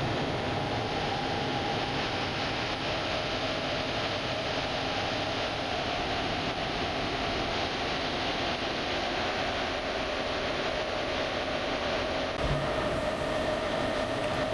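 Steady hiss with a faint, slightly wavering whine held throughout: the background noise of an open video-link audio line.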